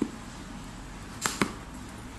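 Hands working open a cardboard shipping box: a short knock at the very start, then two quick sharp cardboard sounds in close succession a little over a second in.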